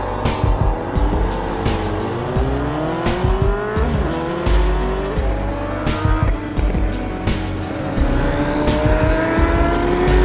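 Honda CBR sport motorcycle engine accelerating, its pitch climbing and dropping back several times as it shifts up, with a long climb near the end. Background music with a steady beat plays over it.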